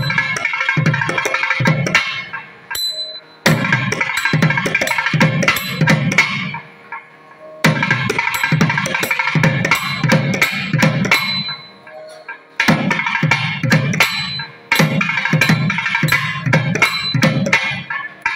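Thavil drumming in a fast percussion solo: dense rolls of sharp, ringing strokes over deep booming ones, played in phrases broken by short pauses about every four seconds.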